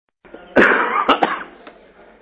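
A person coughing: one strong cough about half a second in, then two short quick coughs.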